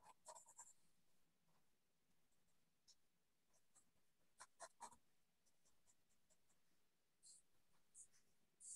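Near silence, with a few faint, short scratches of a pencil sketching lightly on paper: a few near the start, a small cluster a little past the middle, and one near the end.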